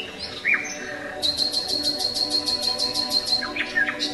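Bird calls: a short falling chirp, then a rapid high trill of about seven notes a second lasting roughly two seconds, then a few quick chirps near the end.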